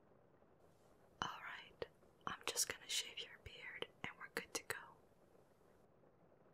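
A person whispering close to the microphone: a run of breathy, hissing syllables with crisp consonant clicks, starting about a second in and stopping near five seconds.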